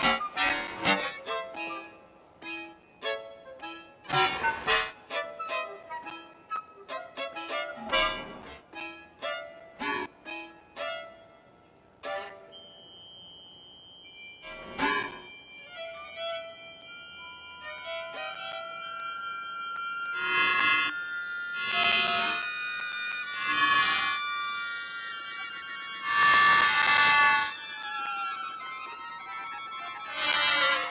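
Violin, button accordion and flute playing contemporary experimental music. The first half is scattered short, detached notes and strikes with gaps between them. From the middle, sustained high tones build into louder held chords, with a falling glide near the end.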